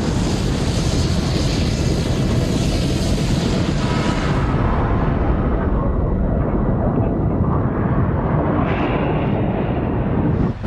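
Film sound of a giant tsunami wave: a loud, steady rumbling roar of rushing water. The hissing top of the sound fades about halfway through, leaving a deep rumble.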